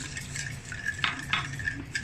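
A wire whisk stirring a thin liquid marinade in a glass bowl, with a couple of light knocks against the glass about a second in.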